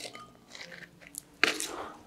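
Soil being added to a beaker of water: soft gritty scraping, with a short louder crunch about one and a half seconds in.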